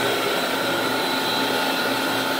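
Steady drone of the slide tower's 40 hp Tech Top electric motors driving Aurora centrifugal pumps at full speed, several constant whining tones over a rush of churning water.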